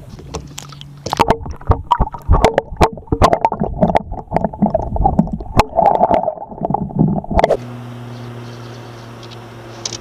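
Muffled sloshing, bubbling and knocking of lake water heard through an underwater camera as a smallmouth bass is released. Near the end it cuts off suddenly to a steady low hum.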